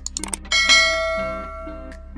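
Subscribe-animation sound effect: a few quick clicks, then a loud bell ding that rings and fades over about a second and a half, over background music.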